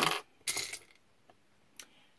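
Small metal costume jewelry pieces clinking together as they are handled: a brief jingle about half a second in and a single click near the end.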